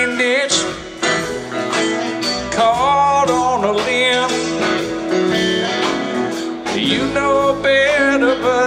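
A live rock band playing, with a lead electric guitar line of bending notes over drums and keyboards.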